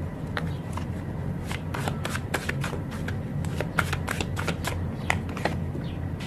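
A tarot deck being shuffled by hand: a run of quick, irregular card snaps and flicks.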